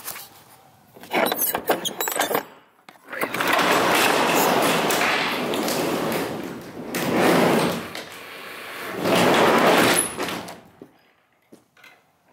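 Rear roll-up door of a U-Haul 14-foot box truck being opened: a few clicks and rattles from the latch about a second in, then a long rattling run as the door slides up its tracks, swelling several times before it stops near the end.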